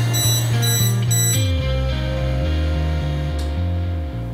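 Background music with a low bass line; over it, a smoke alarm beeps rapidly and high-pitched for about the first second and a half, then stops.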